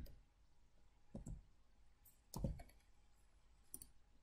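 Three faint, short computer mouse clicks, about a second apart, as an item is picked from a dropdown list on screen.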